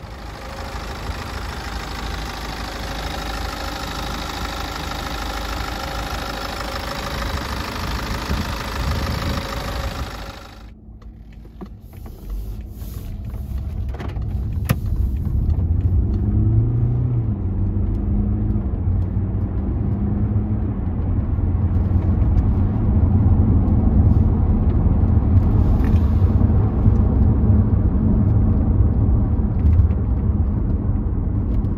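BMW 520d's 2.0-litre four-cylinder diesel engine running steadily for about ten seconds, heard with the bonnet open. After a sudden cut it is heard from inside the cabin on the move, a low engine rumble that rises and falls in pitch and grows louder as the car accelerates.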